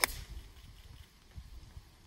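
A golf club striking a ball off the tee: a single sharp click right at the start, then only a low background rumble.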